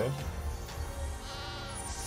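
A cartoon goat's wavering bleat right at the start, then soft background music from an animated film trailer's soundtrack.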